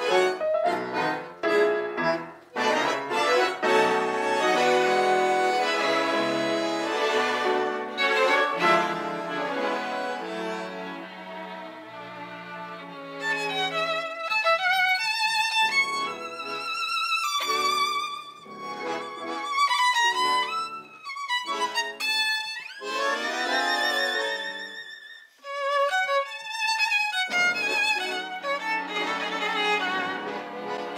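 Tango orchestra of bandoneons and violins playing: full sustained chords at first, then from about halfway a high violin melody with vibrato over short, clipped accompanying chords.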